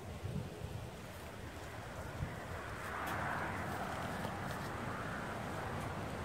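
Quiet outdoor background: wind rumbling on the microphone, with a faint rushing sound that swells in the middle and a few soft rustles and ticks.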